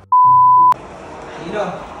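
A loud electronic beep added in editing: one steady, pure tone held for about half a second and cut off sharply, followed by people's voices.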